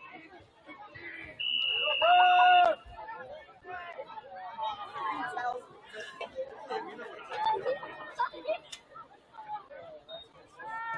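Voices chattering from the sidelines and stands, cut through about a second and a half in by a single steady whistle blast lasting just over a second, the loudest sound here: a football referee's whistle signalling ready for play.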